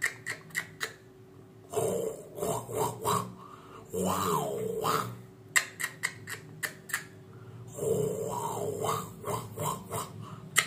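A man's voice making mimicry vocal sounds in three short stretches, one with a rising then falling pitch, with sharp clicks in between.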